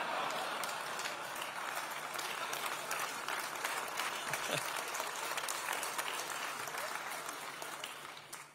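Audience applauding, a dense steady patter of many hands clapping that thins out near the end.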